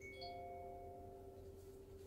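A faint chime-like ring: several high tones that fade quickly and two lower tones that hold for about a second, over a steady hum.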